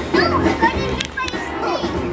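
Children's voices and background chatter over music, with two sharp clicks a little after a second in.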